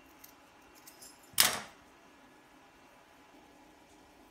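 Scissors cutting through a knit cotton sock: a few faint blade clicks, then one loud snip about a second and a half in.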